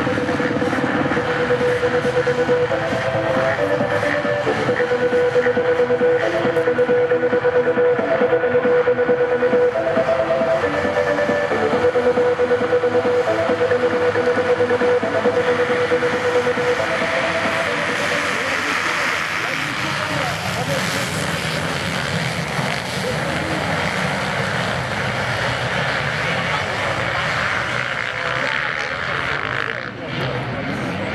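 A gate full of motocross bikes revving, the engines held at steady revs that step up and down while the riders wait for the start. About seventeen seconds in, the gate drops and the whole field goes to full throttle at once, a dense loud swell of engines that peaks for a few seconds and then eases as the pack pulls away.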